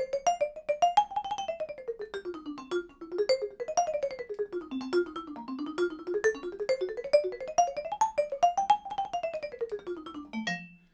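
Vibraphone played with two yarn mallets and the damper pedal left up: a quick run of short struck notes, the melody climbing and falling again and again, each note stopped by the damper bar so the playing sounds very staccato and very dry.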